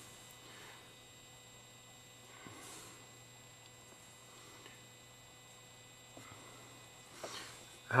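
Quiet background with a faint steady low hum and a few soft, faint noises.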